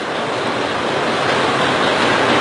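A steady rushing noise that grows slowly louder.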